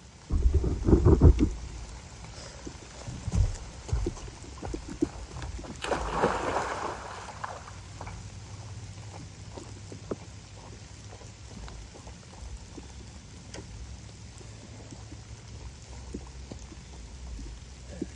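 Rain falling in wet woods, with many small drop ticks on leaves and a puddle. Heavy low rumbles come in the first second and a half and again about three seconds in, and a broader rushing swell follows around six to seven seconds.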